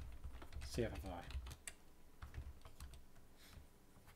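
Typing on a computer keyboard: a run of quick key clicks that thins out over the last couple of seconds.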